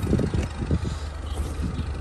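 Steady low rumble with soft, irregular low buffets in the first second: wind on the microphone and handling noise from a handheld camera being moved about.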